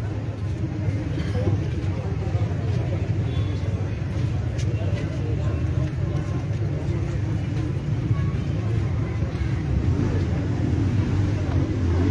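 Outdoor street ambience: a steady low rumble of passing traffic with indistinct voices in the background.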